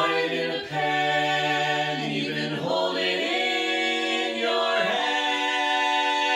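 Mixed barbershop quartet, two women and two men, singing a cappella in close four-part harmony, holding long chords that change a few times, with the lyrics 'You could fry it in a pan… even hold it in your hand.'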